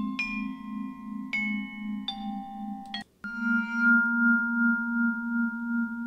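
Vibraphone notes ringing on and overlapping, several struck one after another in the first three seconds, under a low note that pulses regularly. After a brief break near three seconds a new chord of long, steady tones holds on.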